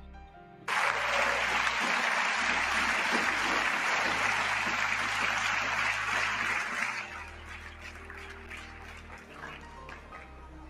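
Members of a large parliamentary chamber applauding. The applause breaks out suddenly about a second in, holds steady, and dies down after about seven seconds, with low background music underneath.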